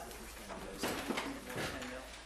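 Rustling and handling noises of people packing up at the end of a class, with faint muffled voices; the loudest bursts come about a second in and again shortly before the end.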